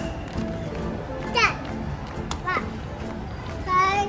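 A young child's high voice calling out three short times, about a second and a half in, around two and a half seconds and near the end, each call sweeping in pitch, over steady background music.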